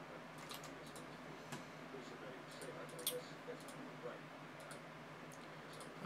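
Faint, irregular clicking of a computer keyboard and mouse, a few keystrokes and clicks each second, over a low steady hum.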